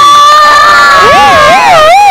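Crowd cheering and shouting, over which one long high tone is held steady and then, from about halfway, wavers up and down about three times a second.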